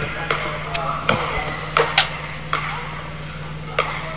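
A basketball bouncing on an indoor gym court: about six sharp, irregularly spaced bounces with a short echo. A brief high squeak comes about two and a half seconds in.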